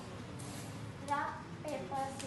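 A few short spoken words from a girl, in two brief stretches about a second in and near the end.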